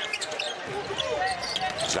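A basketball being dribbled on a hardwood court, with the general noise of the arena around it.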